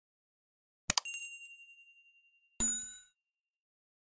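Subscribe-button animation sound effects: two short clicks, each followed by a bright ding. The first ding rings on one high tone and fades over about a second and a half. The second, a notification-bell chime about a second and a half later, is brighter and shorter.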